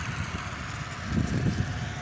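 Road traffic: a motor vehicle passing close on a paved highway, its engine and tyre noise swelling briefly a little after a second in.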